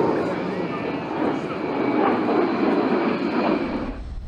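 Four General Electric F118 turbofan engines of a B-2 Spirit stealth bomber flying overhead: a steady, dense rushing jet noise.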